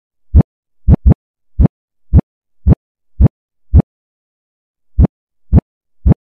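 Deep electronic bass-drum hits from a trap/drill sample pack, in a pattern of about two a second. Each thump swells up quickly and cuts off sharply. There is a quick double hit about a second in and a pause of about a second near the end.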